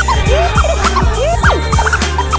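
Record-style scratching on a DJ controller's jog wheel over a playing track with a steady bass beat: quick back-and-forth pitch sweeps, about six a second.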